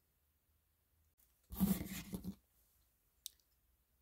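Faint snipping of small scissors trimming the fake fur of a miniature dog figure, with one sharp click near the end. A brief low-pitched, hum-like sound comes about halfway through and is the loudest thing heard.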